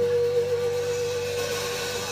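A single high note from a live band, held steady with a slight wobble and slowly fading, over a faint low hum.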